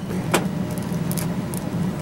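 A steady low hum of background machinery, with one light click about a third of a second in and a few faint ticks after it.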